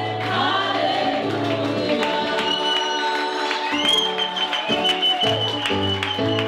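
Gospel worship song sung by several women's voices with acoustic guitar and a steady bass accompaniment, sustained sung notes over a regular beat.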